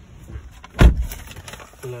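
A Mercedes-Benz E 300's car door shutting, one heavy, deep thud a little under a second in.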